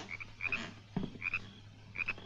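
Frogs calling in short, high, paired chirps a few times, over a steady low hum, with a soft knock about a second in.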